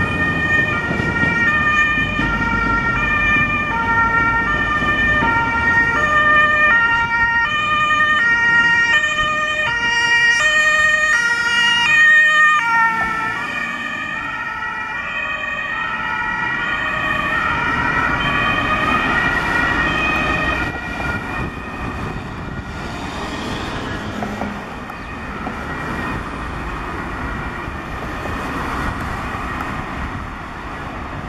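Mercedes-Benz Sprinter ambulance's German two-tone siren (Martinshorn) on an emergency run, switching between a high and a low note about every 0.7 s. It is loudest in the first dozen seconds and a little quieter after that, over road traffic noise.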